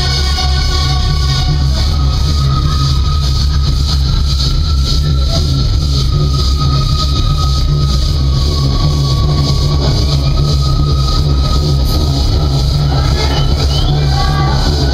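An industrial metal band playing live in an electronic passage: a loud, bass-heavy steady pulse with a thin held high synth tone over it, and no guitar chords.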